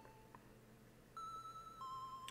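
Faint electronic background music: soft sustained tones held one at a time, a new note coming in about a second in and moving to a lower note near the end.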